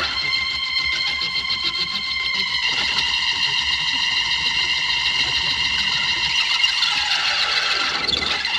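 Electric keyboard solo: a long, high sustained note with a fast warble. The pitch shifts about two and a half seconds in and glides downward near the end.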